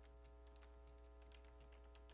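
Near silence: faint, irregular light clicks over a steady low electrical hum.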